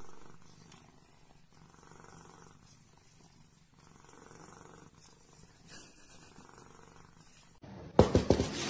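A domestic cat purring close up, faint and steady, swelling and easing in even cycles about a second apart.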